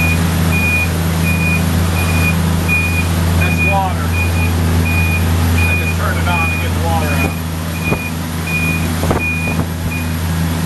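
A Luhrs 34 boat's inboard engines running steadily under way, a deep even drone. Over it, a short high electronic beep repeats about every 0.7 seconds.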